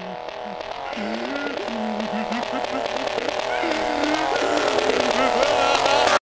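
Phonk beat intro: a sustained synth melody loop with sliding, wavering pitched sounds over it, swelling steadily louder toward the drop.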